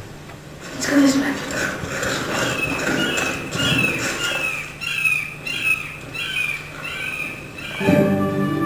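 A bird calling over and over, short high calls that drop in pitch, about two a second, starting a few seconds in.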